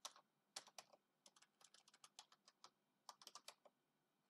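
Computer keyboard typing: a run of quiet, sharp keystrokes in several quick bursts with short pauses between them.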